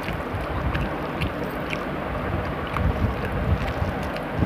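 Eating by hand: fingers squeezing and mixing rice and curry on a steel plate, along with chewing, make small wet clicks several times a second. They sit over a steady low rumbling noise.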